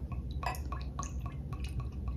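Wine poured from a glass bottle into a stemmed wine glass: a run of small, irregular splashes and clicks as the stream fills the glass.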